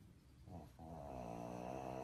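A pug's drawn-out groan, a short start about half a second in and then one longer, steady groan lasting over a second: an annoyed protest at being poked.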